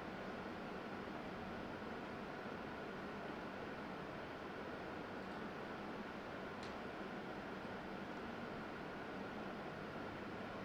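Steady background hiss of the room, with a faint steady high hum and one small click a little past the middle.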